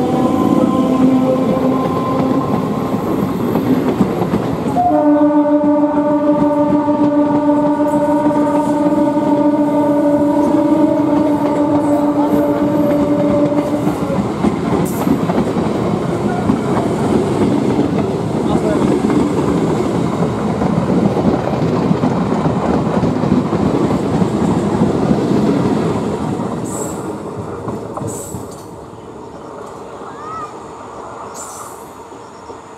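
Electric multiple-unit (EMU) local train passing close by at speed. A train horn sounds in two long blasts: the first ends about four seconds in, and the second, louder one runs until about halfway. After the horn the wheels rumble and clatter on the track, and the sound fades away near the end.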